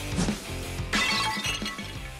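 A plate smashing about a second in, a sudden crash of breaking crockery with a bright shatter, over steady background music.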